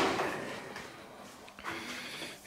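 Quiet room tone between spoken phrases, with the last word trailing off at the start and a faint murmur of voice near the end.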